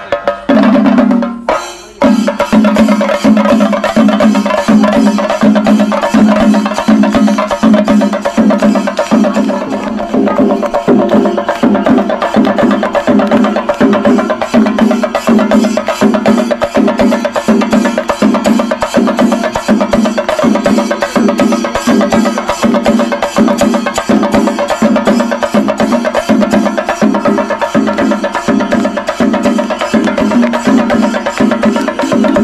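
Chenda melam: a group of Kerala chenda drums beaten with sticks in a fast, dense, unbroken rhythm, with a short dip in loudness about two seconds in.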